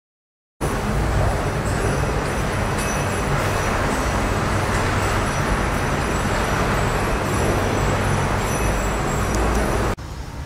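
Steady rumbling ambient noise, heaviest in the low end, starting abruptly about half a second in after silence.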